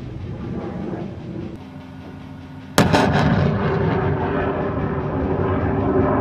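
A HIMARS rocket launch: a lower rumble fades, then a sudden loud blast nearly three seconds in as a rocket fires, followed by the sustained roar of the rocket motor.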